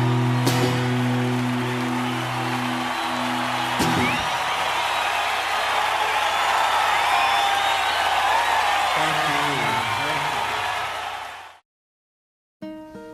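A sustained acoustic guitar chord ringing out for about four seconds under audience applause. The applause, with whistles and cheers, carries on after the chord stops and fades away near the end.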